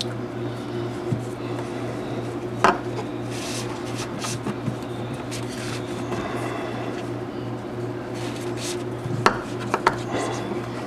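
Paracord being handled and pulled through a knot tied on a PVC pipe: soft rubbing and rustling of the cord, with a sharp knock about two and a half seconds in and two more near the end. A steady low hum runs underneath.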